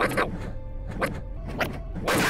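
Soft film-score music over a low steady drone, cut by about four quick swishes of a staff being swung through the air.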